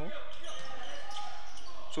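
Basketball game play on a hardwood gym floor: a ball bouncing and short high sneaker squeaks over a steady hall noise.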